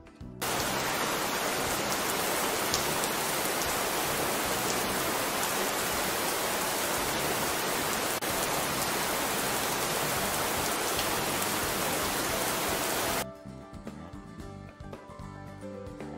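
Rain sound effect, a steady, even downpour that starts about half a second in and cuts off abruptly about three seconds before the end. Soft background music carries on after it.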